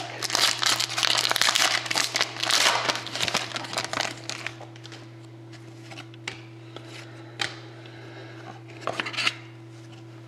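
A foil trading-card pack being torn open and crinkled by hand for about the first four seconds, followed by a few soft clicks as the cards are slid and flicked through. A steady low hum sits underneath.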